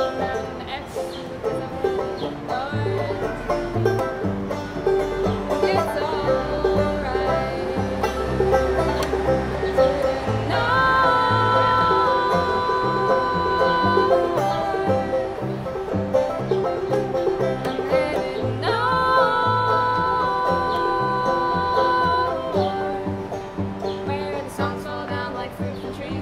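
Banjo and cello playing an Americana folk tune, the cello's bass notes stepping along steadily under the banjo. Twice, about ten seconds in and again near the end, two women's voices join in long wordless held notes in harmony, each note sliding up into place.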